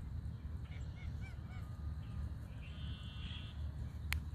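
Canada goose giving a single honking call lasting under a second, about three seconds in, preceded by a few short high chirping calls about a second in.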